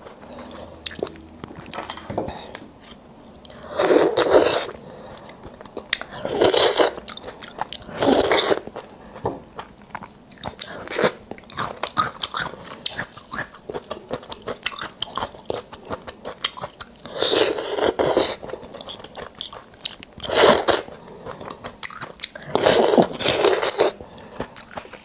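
Close-miked eating of spicy beef bone marrow: soft, wet chewing clicks, broken by about six louder noisy bites or mouthfuls, each lasting under a second.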